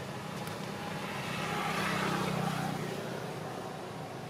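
A motor vehicle passing by off camera, its engine and road noise growing louder to a peak about halfway through and then fading away.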